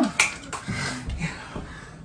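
A single sharp click a fraction of a second in, followed by a faint low murmur.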